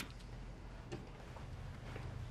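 Quiet pause with a faint steady low hum and a single soft click about a second in.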